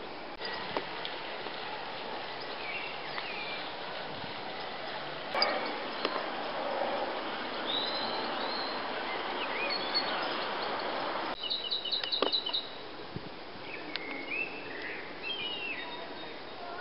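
Birds calling outdoors: scattered short chirps and whistles, with a quick run of repeated high notes about twelve seconds in, over a steady background hiss of outdoor noise.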